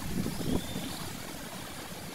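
Low, steady outdoor background rumble with no distinct event.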